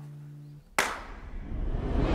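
A single sharp, loud hand clap about three-quarters of a second in, following a low held note that fades out.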